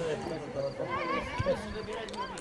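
Distant shouts and calls of people around a football pitch, short rising-and-falling calls about a second in and again a moment later, over low crowd murmur.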